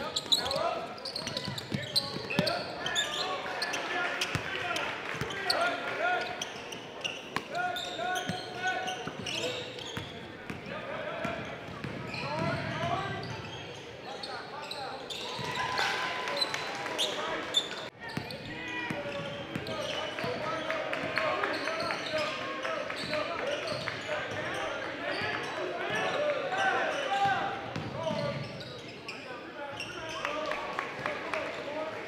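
Live gym sound of a basketball game: indistinct voices of players and spectators calling out, with the basketball bouncing on the hardwood floor. The sound drops out briefly a little past halfway.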